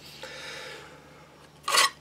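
Steel knife blade sliding out of a moulded ABS plastic sheath: a soft scraping rub through the first second. A short, sharp noise follows near the end.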